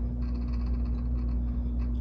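Steady low background hum with a single held tone, and nothing else distinct over it.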